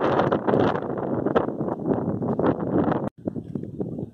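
Wind buffeting the phone's microphone in irregular gusts, a loud low rush that breaks off for an instant about three seconds in.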